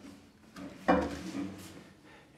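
A cello being handled and tipped down across the player's lap: a sudden knock on the wooden body just before a second in, with the strings ringing briefly and fading.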